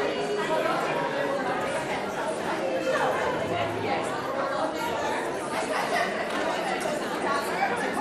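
Overlapping chatter of a crowd of adults and children, many people talking at once with no single voice standing out.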